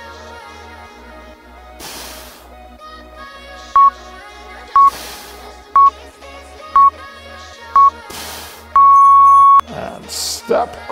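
Workout interval timer counting down: five short beeps at the same pitch about a second apart, then one longer beep that marks the end of the work interval. Electronic background music with a steady beat and recurring cymbal swells plays under it.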